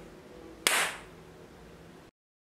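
Last notes of an acoustic guitar and charango fading out, then a single sharp click about two-thirds of a second in, followed by faint room tone.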